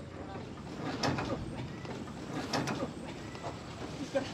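A few short knocks and rattles from a livestock trailer's metal sliding gate being worked by hand, about a second in and again midway through, over a steady outdoor background.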